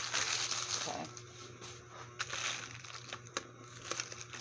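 Priority Mail padded envelope crinkling as it is handled and opened, loudest in the first second, then softer rustling with a few sharp clicks.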